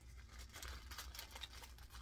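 Faint crinkling of plastic packaging being handled, over a low steady hum.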